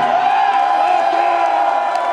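Concert crowd cheering and whooping after the singer's speech, with one long held high note over the top.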